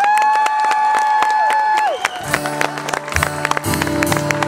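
A man's long held vocal call, sliding up at the start and dropping away about two seconds in, over quick percussive hits; then the live band comes in with bass and a steady rhythm.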